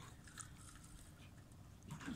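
Near silence, with faint irregular clicks from a spinning reel being cranked as a hooked fish is reeled in, over a low rumble.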